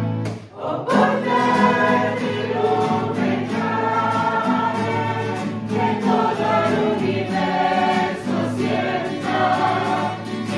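Mixed choir of men's and women's voices singing a Christian song together with guitar accompaniment. There is a short break between phrases about half a second in, then the singing resumes.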